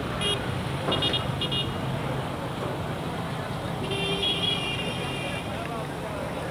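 Road traffic with vehicle horns honking: three short toots in the first two seconds, then a longer honk about four seconds in, over a steady traffic bed.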